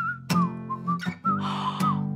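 A person whistling a short, gliding melody over a light backing music track with steady low notes.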